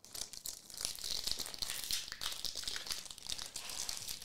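Foil trading-card pack wrapper crinkling in the hands as it is pulled open, a continuous run of fine crackles.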